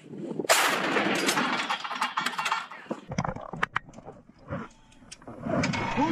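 Towed howitzer firing: a single sudden blast about half a second in, its noise rolling on for a couple of seconds before fading, followed by a few sharp clicks.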